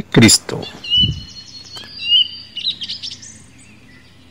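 Small birds chirping: a string of short, high twittering calls with quick rising and falling notes over the first three seconds, then they die away.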